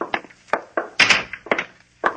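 Radio-drama sound-effect footsteps: a run of short, sharp steps, about two or three a second.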